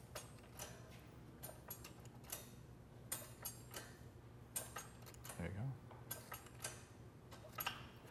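Bench-mounted sheet metal shrinker/stretcher worked by hand, its jaws giving faint, irregular clicks about every half second as a strip of sheet metal is fed through in small bites. The metal is being worked slowly through the jaws to curve it without crimping.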